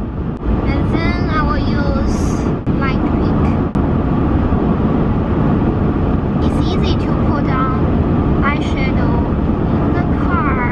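Steady road and engine rumble inside the cabin of a moving car, with a few brief snatches of voice over it.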